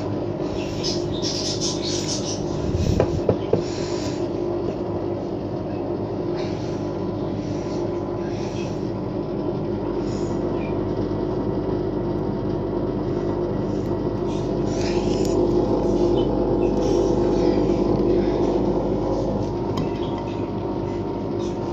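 Front-loading washing machine tumbling a wash: a steady motor hum with several fixed tones under repeated swishes of sudsy water in the drum, every second or two. A few sharp knocks come about three seconds in.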